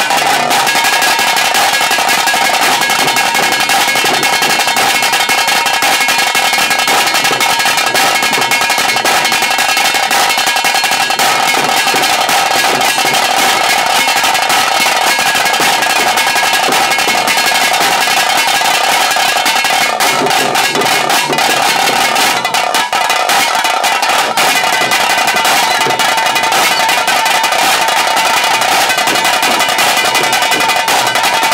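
Hulivesha (tiger dance) band's tase drums playing fast, dense drumming, with a steady ringing tone held over it.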